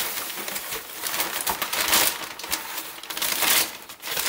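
Crumpled newspaper packing rustling and crinkling irregularly as hands dig through it inside a cardboard box.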